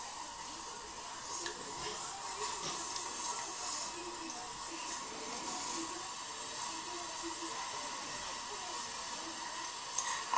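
Steady hiss of room tone with a faint, even high tone running through it, and a faint, irregular murmur underneath.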